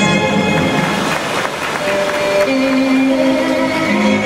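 Orchestral music from a live concert. Around the middle the held notes give way to a short noisy stretch, then a new piece starts with sustained string notes about two seconds in.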